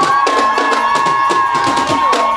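Guggenmusik brass band playing a march: the brass holds one long high note while the drums keep a steady beat underneath.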